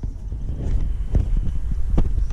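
Wind rumbling on the microphone, with a couple of faint knocks from handling partway through.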